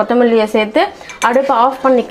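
Steel spoon clinking and scraping against a steel pot as a thick curry is stirred, a few sharp clinks, with a voice talking over it.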